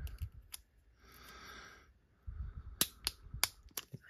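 Thin plastic card sleeve crackling under the fingers as its sealed edge is worked apart: a soft rustle about a second in, then a quick run of sharp clicks in the second half.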